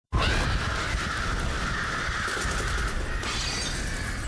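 TV channel ident sound effect: a dense shattering, crackling noise like breaking glass that starts abruptly and carries on steadily.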